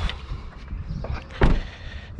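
The front door of a 2018 Toyota Corolla being shut: a light click near the start, then one solid thump about a second and a half in.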